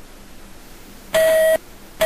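Electronic game-show beep: one steady mid-pitched tone about half a second long, a little past the middle.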